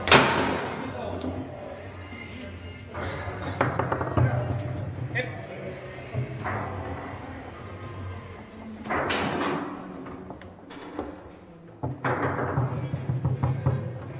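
Foosball play: sharp cracks and knocks of the ball being struck by the figures on the rods and hitting the table. The loudest crack comes right at the start, and fewer, scattered knocks follow.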